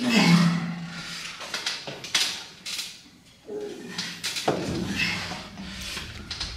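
Men straining in an arm-wrestling bout: a long strained groan for about a second and a half at the start, short breathy bursts of effort, then another long groan near the end.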